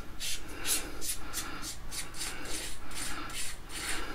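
Flashlight tail cap being unscrewed by hand, its threads rasping in a run of short scratchy strokes, about four a second.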